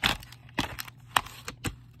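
Plastic VHS clamshell case being handled and shut, giving a handful of sharp separate clicks and cracks.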